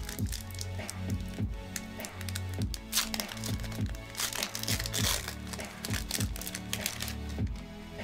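Foil Pokémon booster pack wrapper crinkling and tearing as it is pulled open by hand, loudest about three to five seconds in, over background music with a steady beat.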